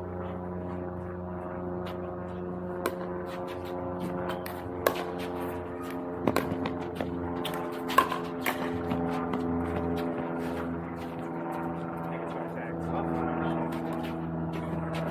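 Pickleball paddles hitting the hard plastic ball during a rally: a series of sharp pops about one to two seconds apart, the loudest about five and eight seconds in. A steady low hum runs underneath.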